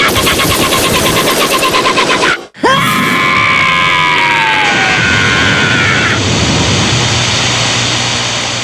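Rapid, even cartoon gunfire mixed with laughter, cut off abruptly about two and a half seconds in. Then a falling electronic whine over a steady TV-static hiss that lasts to the end.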